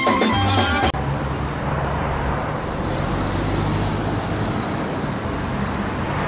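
Live band music with singing cuts off suddenly about a second in, giving way to a steady rumbling noise of street traffic ambience.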